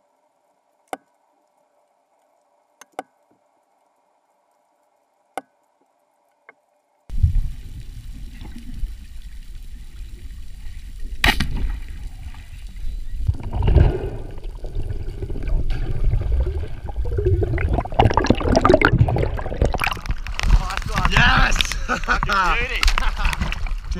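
Underwater camera audio during a spearfishing dive: near silence with a few sharp clicks, then, about seven seconds in, loud, deep water noise and sloshing. There is one sharp crack about eleven seconds in, and busier splashing after it as the diver reaches the surface.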